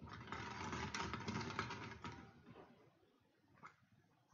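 Small plastic draw balls clattering against each other and the glass of the draw bowl as a hand stirs them, a dense rattle of quick clicks for about two and a half seconds that dies away, then a single click near the end.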